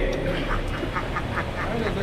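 Laughter: a run of short, quick pulses of ha-ha, quieter than the talk around it.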